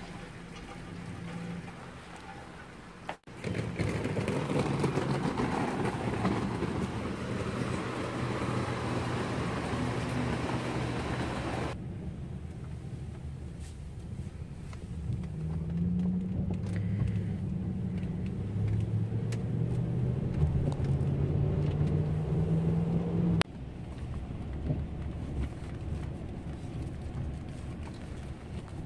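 Car engine and road noise heard from inside the cabin while driving, a steady hum with the engine note climbing in pitch a few times as the car accelerates. The sound changes abruptly a few times as the clips cut.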